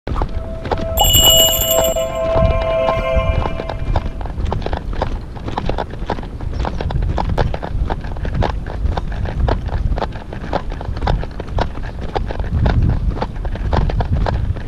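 Footsteps on a concrete breakwater at a steady walking pace, with wind rumbling on the microphone. About a second in, a short chime of a few held tones sounds for roughly two to three seconds over the steps.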